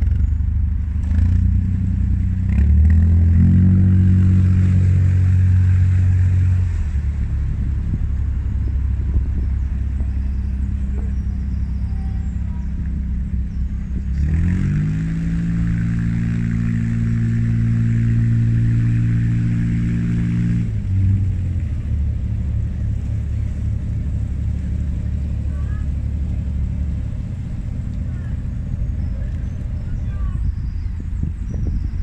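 Narrowboat diesel engine running steadily at low revs with an even beat. The throttle is opened twice, about three seconds in and again about halfway through; each time the pitch rises, holds for several seconds and then drops back.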